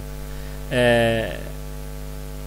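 Steady electrical mains hum on the recording, a low drone with a buzz of many even overtones. About two-thirds of a second in, a man's voice holds a single vowel for about half a second, its pitch falling slightly.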